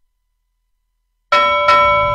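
Silence, then about a second and a half in a bell is struck twice in quick succession and rings on with a clear, sustained tone over a low hum.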